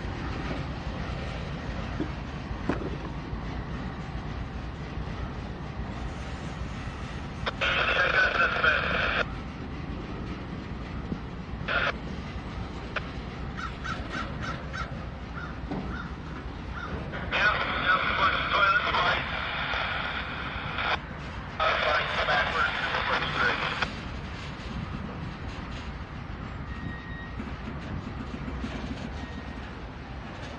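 Ballast hopper cars of a slow-moving rock train rolling past with a steady low rumble, broken by four loud, harsh bursts of one to three seconds each, the longest two close together in the second half.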